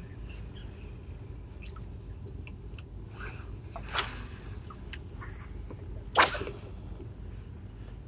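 Steady low rumble of wind and open-water background, broken by two short, sudden bursts of noise about four and six seconds in, the second the loudest.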